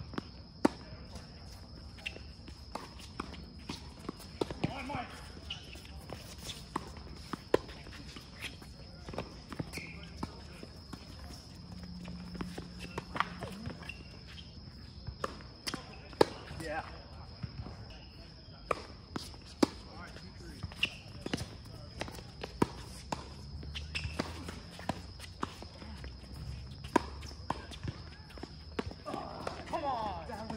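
Tennis balls being struck by rackets and bouncing on a hard court during rallies, as sharp irregular pops, with players' footsteps between them. A steady high-pitched whine runs underneath.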